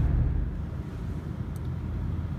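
Steady low road and tyre rumble inside the cabin of a moving 2019 Toyota Prius AWD. The rumble drops a little in level about half a second in.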